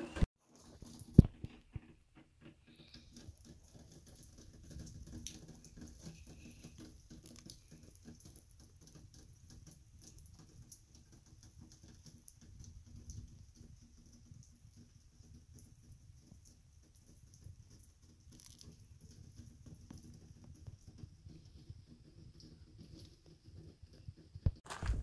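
Faint patter of light rain, with one sharp click about a second in and a faint steady high-pitched whine throughout.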